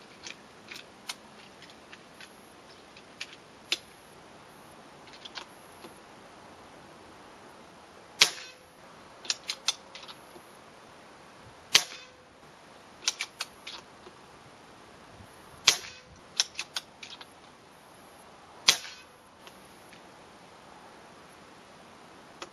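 Benjamin Marauder .25 calibre PCP air rifle firing four shots a few seconds apart, each a sharp crack with a ringing "ping" caused by the hammer striking the valve, the hollow air chamber ringing like a tuning fork. Lighter clicks of the bolt being cycled follow each shot, with scattered small handling clicks in the first few seconds.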